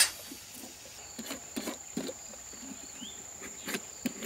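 A hand peeler scraping the green skin off a winter melon in short, uneven strokes, about two a second, over a steady high-pitched insect drone.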